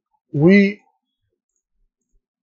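A man says one short word, then near silence.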